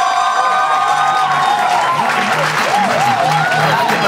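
Audience applauding as closing music plays, a bass line coming in about two seconds in.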